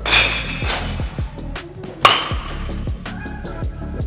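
Background music with a steady beat, and a single sharp crack about halfway through: a baseball bat hitting a ball in batting practice.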